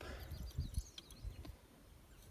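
Faint handling sounds of locking pliers and a steel snap ring being gripped by hand: a few light clicks over a low rumble.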